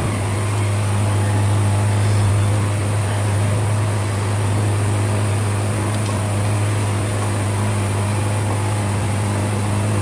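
A steady low hum over an even background whoosh, unchanging in level, with no distinct eating sounds standing out above it.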